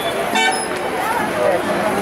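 A vehicle horn gives one short toot about half a second in, over a steady babble of many voices.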